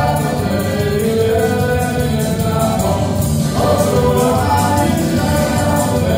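Live dance band playing a popular folk dance tune, with a sung melody over a steady bass and beat.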